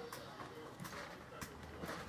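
A few faint, scattered clicks and taps of hands handling electrical wiring and small connectors, over a faint low hum.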